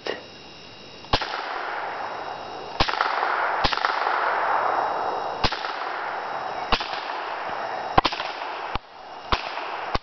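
A scoped rifle fired repeatedly: about eight sharp shots, roughly one to two seconds apart, over a steady hiss.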